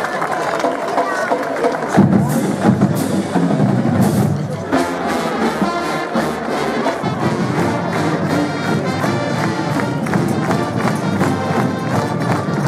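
Brass band music with drums over the chatter of a large crowd; the music starts about two seconds in.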